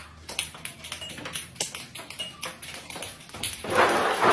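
A run of light taps and clicks, then about three and a half seconds in a loud rattling clatter begins as ping-pong balls start to tumble out of a plastic bin.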